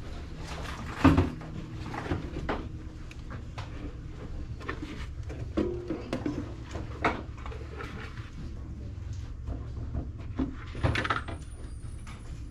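Hard plastic items being picked up and set down on glass shelving: a series of light knocks and clatters, the loudest about a second in and another near the end.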